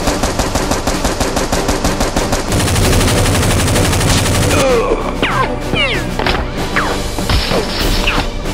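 Dubbed movie-style automatic gunfire sound effects: rapid shots for the first few seconds, then a few sweeping whistle-like sounds, over background music.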